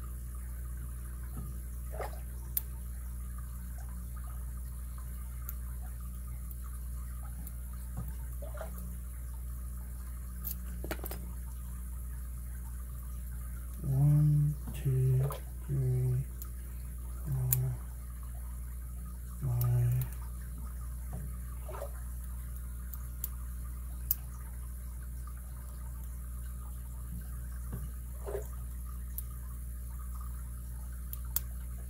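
Faint, sparse metallic clicks of a hook pick working the pins of a pin-tumbler padlock under tension, over a steady low hum. Around the middle, five short low hums from the picker's voice are the loudest sounds.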